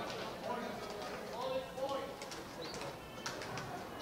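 A racquetball being bounced on the hardwood court floor before a serve, a few light, sharp bounces in the second half, over faint voices.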